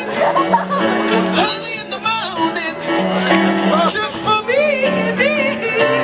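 Live band music: a male singer vocalises in wavering, gliding runs over guitar and a steady bass line, with the voice strongest in the last couple of seconds.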